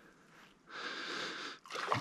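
One breathy exhale close to the microphone, lasting just under a second, about a third of the way in.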